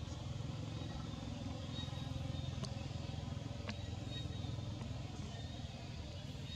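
Low, steady engine rumble of a motor vehicle running nearby, with two short sharp clicks near the middle.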